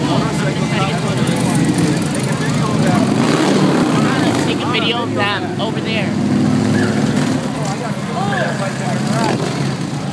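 Harley-Davidson V-twin motorcycles riding past, their engines running steadily and swelling as riders go by, with crowd voices and shouts over them.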